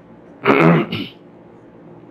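A man clears his throat once, a short loud voiced rasp about half a second in.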